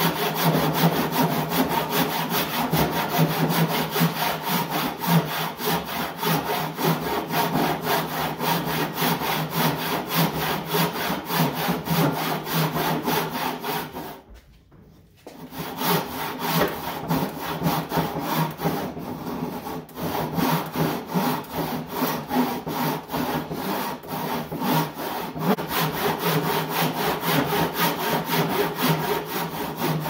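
Hand rip saw ripping a board held upright in a bench vise, in a steady back-and-forth rhythm of strokes. The sawing pauses briefly about halfway through, then carries on.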